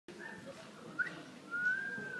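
A person whistling: a short note, a quick upward slide about a second in, then a long held note that rises and falls gently near the end, over a faint low murmur.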